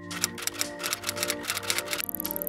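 Typewriter sound effect: rapid, irregular clacking keystrokes over background music with sustained notes.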